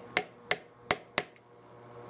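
Four sharp metallic taps about a third of a second apart, a small steel hand tool striking the metal set into a gunstock forend, each with a brief high ring.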